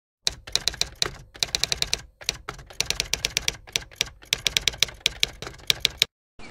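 Typewriter keys striking in quick, uneven runs of several clacks a second, with a short pause about two seconds in. It is a typewriter sound effect that keeps pace with a title being typed out letter by letter.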